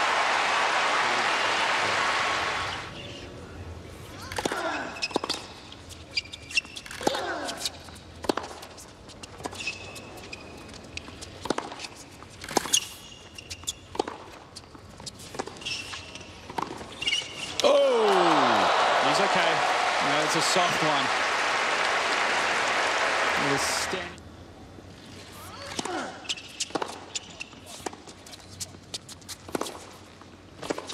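Tennis crowd applauding, fading out after about two and a half seconds. Then tennis balls bouncing on a hard court and racket strikes of a rally, with the crowd quiet. About 18 seconds in the crowd breaks into a falling groan and applause for about six seconds, and then more ball bounces and racket hits follow.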